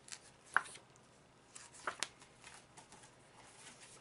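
Paper book pages being handled and turned: a few brief, faint rustles and light taps, the sharpest about half a second in and two more close together near the two-second mark.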